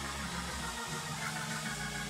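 A low, steady bass drone with faint crowd noise above it. The drone drops out briefly twice.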